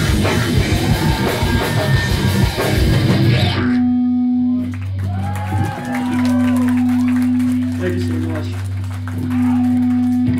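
Metalcore band playing live at full volume: distorted guitars and drums with the vocalist screaming into the microphone. About three and a half seconds in the full band cuts off abruptly, leaving a low sustained bass note with a higher held guitar note ringing on and off over it.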